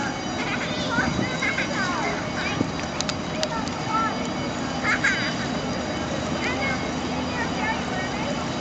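Steady low drone of a large lake freighter's engines and deck machinery as the ship passes close by. Scattered voices of people nearby sound over it.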